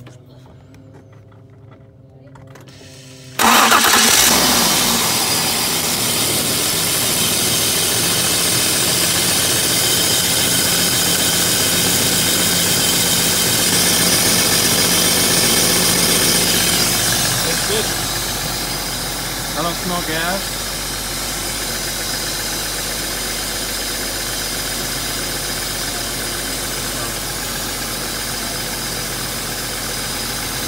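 BMW E34 525i's inline-six engine starting about three seconds in, running loud for about fourteen seconds, then dropping to a quieter steady idle. It is a test start to check a freshly clamped fuel return line for leaks.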